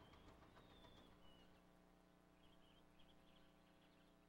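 Near silence, with faint bird chirps as the outdoor sound fades away, over a faint steady hum.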